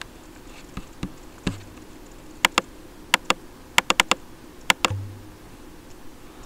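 Clicking on a computer's mouse and keys: a dozen or so sharp clicks, a few scattered at first, then a quick run of them in pairs and groups through the middle, while the on-screen magnifier is worked.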